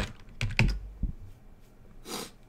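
A few keystrokes on a computer keyboard, the loudest about half a second in, followed by a handful of fainter taps.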